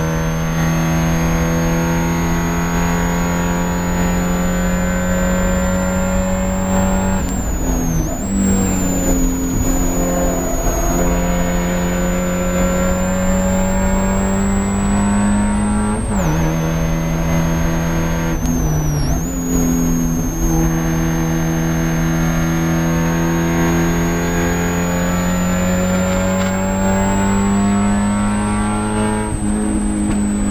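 Spec Miata race car's four-cylinder engine running hard at high revs, its pitch climbing slowly. The pitch dips briefly about eight seconds in, drops suddenly about sixteen seconds in (an upshift), dips again a few seconds later, then climbs again. A thin high whine rises and falls with the engine.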